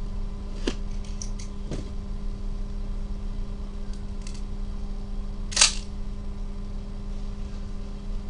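Gloved hands handling a Panini National Treasures football card box: a few light clicks and taps, then one sharp snap about five and a half seconds in, over a steady low hum.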